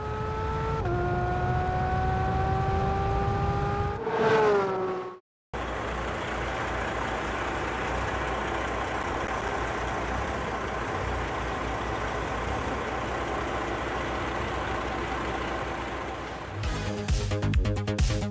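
Logo sting: a rising, revving engine-like tone that steps down once about a second in and climbs again, cutting off after about five seconds. Then a steady rushing noise, and electronic music with a pulsing beat comes in near the end.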